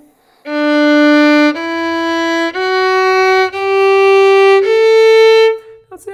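Violin playing the opening of a slow two-octave scale: five bowed notes of about a second each, each a step higher than the last, starting about half a second in.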